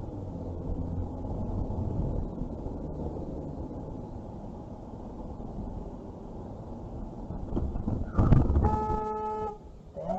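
Car interior noise, a low engine and road rumble while driving, then near the end a sudden loud burst of noise followed by a car horn sounding one steady honk of about a second.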